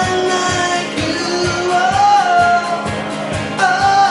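A man singing with long held notes over a steadily strummed acoustic guitar, performed live.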